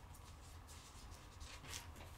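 Faint rustling of Bible pages being turned, in a few soft brushes, over a low steady hum.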